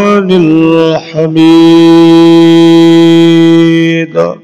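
A man chanting a slow, melodic Islamic devotional recitation, his voice sliding between notes, breaking off about a second in, then holding one long steady note until near the end.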